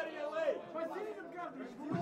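Several people talking at once, no single clear voice: chatter from the club audience and band.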